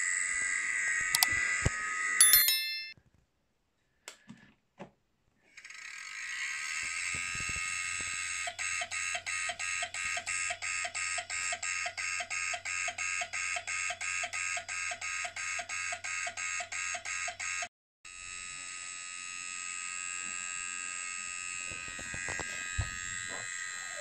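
A 1999 Maxtor hard drive's high whine runs steadily, cuts out for a couple of seconds, then returns with a low hum. Its heads then click over and over, about four or five times a second for some nine seconds, before stopping and leaving the whine. The drive is busy but reading nothing.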